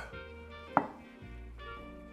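Soft background music with held notes, and one sharp knock about a third of the way in: a glass jar knocked against a wooden chopping board.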